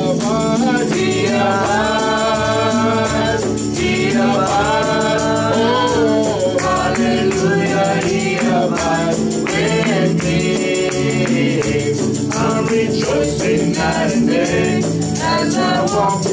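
Live gospel singing: several voices sing a joyful refrain over a band with steady bass notes and a regular percussion beat.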